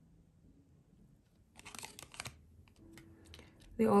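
Tarot cards handled on a table: a brief cluster of quick papery slides and taps about halfway through as a card is laid down on top of another in the spread, with a few fainter touches after.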